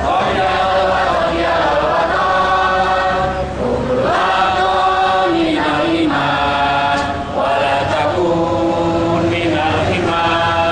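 Voices singing a slow song together in long held notes, phrase after phrase, led by a woman.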